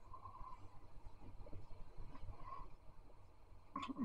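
Quiet room with faint small sounds of a man sipping and swallowing beer from a glass, over a low steady hum.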